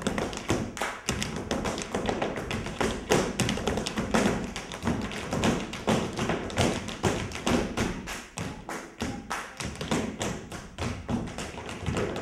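Tap dancing: the metal plates on the toes and heels of tap shoes striking a hard floor in a rapid, unbroken rhythm of sharp clicks.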